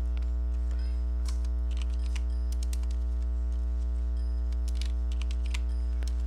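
Computer keyboard keys tapped in short, scattered runs of a few strokes, over a loud, steady low hum.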